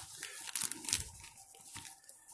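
Clear plastic bag crinkling as it is handled and turned over, a run of irregular crackles and rustles with a few sharper clicks.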